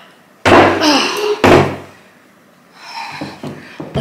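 Two loud thuds about a second apart, as a wooden dining chair is moved and knocks against the table, followed by softer handling sounds near the end.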